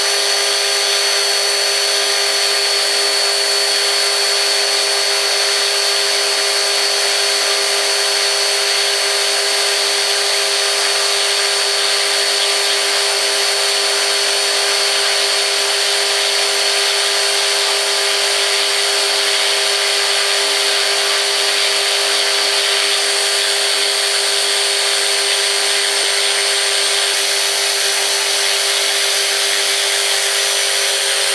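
Tarot 450 Pro V2 electric RC helicopter held at full spool-up on the ground with its blades at zero pitch and no load, on an 80% throttle curve. Its 1700KV brushless motor and helical-cut main gear give a steady whine of several fixed tones over the rotor's rushing air, unchanging in pitch.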